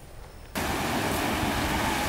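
Steady rushing surf from waves on a rocky seashore, starting abruptly about half a second in.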